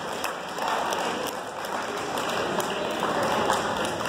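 Spectators in the bleachers applauding with many scattered hand claps as a wrestling bout ends in a pin.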